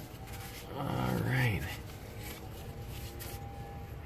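Faint rubbing and light clicks of a drum-brake wheel cylinder being worked loose from its backing plate by hand. A short murmured voice comes about a second in.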